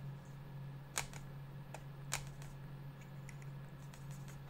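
Faint handling sounds of a water brush and a plastic watercolour palette: a few light clicks and taps about a second in and again around two seconds, as the brush is worked on the paper and moved to the paint pans. A steady low hum runs underneath.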